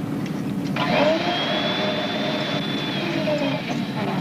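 A rushing, motor-like noise with a faint high tone. It starts about a second in, the tone rises, holds and falls, and the noise stops shortly before the end. Under it runs a low steady hum.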